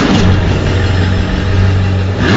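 Car engine sound running steadily at a low, even pitch, after a brief rushing whoosh right at the start.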